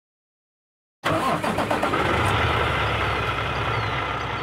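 International semi-truck's diesel engine starting: it cranks briefly about a second in, catches, and settles into a steady idle.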